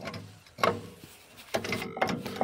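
Cast-iron valve cover of a power tiller's diesel engine being handled against the cylinder head: two short metallic knocks, about half a second in and again near the end, with faint handling noise between.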